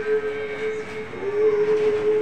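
One long, steady, reedy musical note held without a break, stepping down slightly in pitch about a second in.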